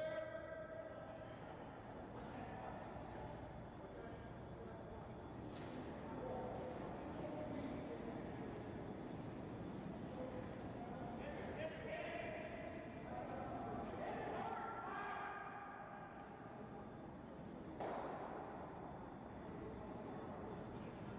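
Curlers' voices talking indistinctly across an echoing curling rink, with one sharp knock near the end.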